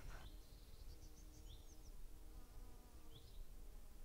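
Near silence: quiet room tone with a few faint, short high chirps spaced a second or two apart.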